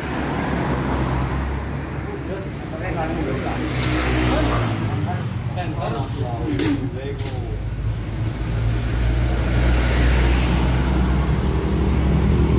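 An engine running steadily at idle, a low even hum that grows somewhat stronger in the second half, with voices talking in the background.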